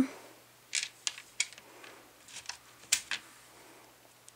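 Hard plastic Lego pieces clicking and knocking as a built figure is handled: about half a dozen sharp, irregular clicks, the loudest about three seconds in.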